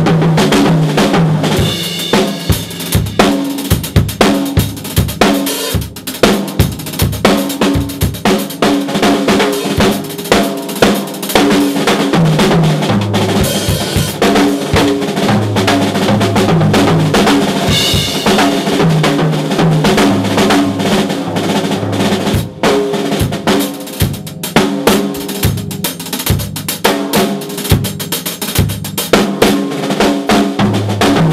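Gretsch drum kit played in a busy, continuous solo groove: rapid bass drum, snare and tom strikes with cymbals ringing over them, and occasional rolls.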